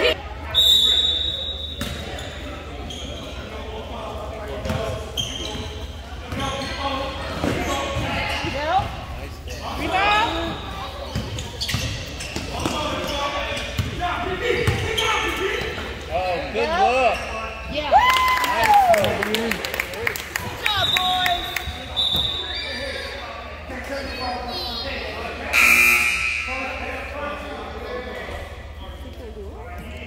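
Basketball game in a gym: the ball bouncing on the hardwood court amid players' and spectators' voices in the echoing hall. A referee's whistle sounds right at the start and again about two-thirds of the way through.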